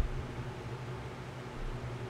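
Room tone in a pause between sentences: a steady hiss with a low hum, opening with one brief click.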